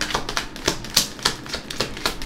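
A deck of tarot cards being shuffled by hand: a quick, irregular run of card clicks and snaps, several a second.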